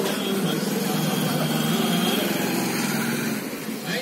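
A motorcycle and a scooter passing close by, their small engines running steadily and then fading away near the end.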